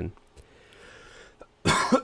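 A man coughs once, a short harsh cough near the end.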